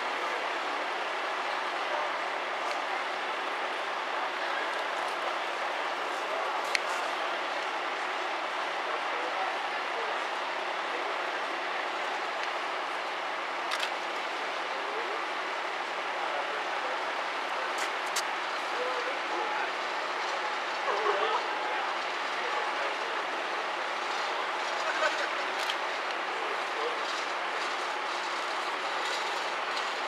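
Fire engine idling steadily, a constant engine noise, with indistinct voices of onlookers and a few faint clicks.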